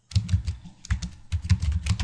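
Computer keyboard typing: a quick, uneven run of about a dozen keystrokes, with a short pause partway through the first second.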